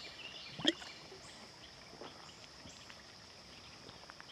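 Quiet outdoor background with a few faint bird chirps, and one short swallow about two-thirds of a second in as water is drunk from a bottle.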